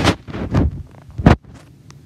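Handling noise: an arm and hand brushing and rubbing against the recording phone's microphone, a few loud scuffs in the first second and a half, the loudest near the end of them.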